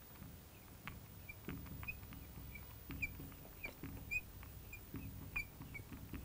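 Marker pen writing on a glass lightboard: a string of short, faint squeaks and light taps as the letters are drawn, starting about a second in.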